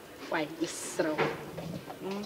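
Soft, low voice: a few brief murmured sounds rather than full dialogue, with a short hiss a little over half a second in.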